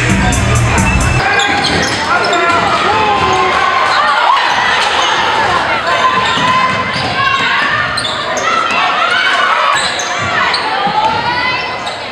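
A music track with a beat cuts off about a second in, giving way to live game sound in a gymnasium: a basketball bouncing on the court, sneakers squeaking, and players and spectators calling out in the echoing hall.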